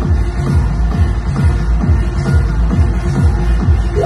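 Loud electronic dance music played over a club sound system, driven by a fast, heavy kick drum beat.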